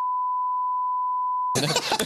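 Broadcast censor bleep: a steady pure beep tone near 1 kHz laid over the speech, which stops suddenly about a second and a half in as talking and laughter resume.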